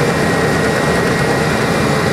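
A road paver's engine running steadily under load, with its spreading auger pushing plant-mix base aggregate out in front of the screed. A thin, steady high whine sits over the engine.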